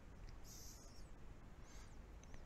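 Faint, brief scraping of a small sculpting tool spreading gritty Vallejo Thick Mud paste onto the edge of a diorama base, once about half a second in and more faintly near the end, against near-silent room tone.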